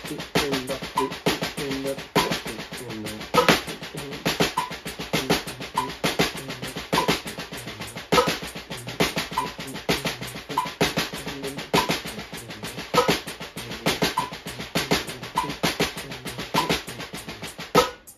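Drumsticks playing a fast, continuous six-stroke-roll exercise in 32nd notes on a practice pad, with a louder accent about every 1.2 seconds. A metronome beeps steadily about every 0.6 seconds underneath. The playing stops right at the end.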